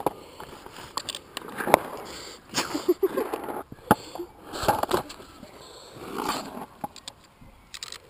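Handling noises at an inline skate being tightened on a child's foot: scattered clicks, knocks and scuffs of the buckle and straps, with a brief vocal sound about three seconds in.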